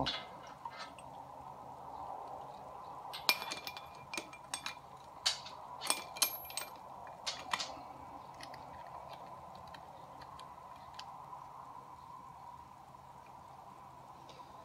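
Clinks and knocks of stainless steel fittings being handled: a hose fitting seated in the port of a stainless pressure-vessel end cap and a hinged sanitary clamp closed over it. A cluster of sharp clinks comes a few seconds in, then quieter handling with faint ticks, over a faint steady hum.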